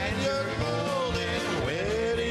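Live polka band playing, with two male voices singing over it and a regular bass beat underneath.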